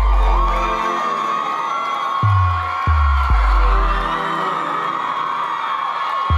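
Electronic intro music with deep booming bass hits under a held high tone.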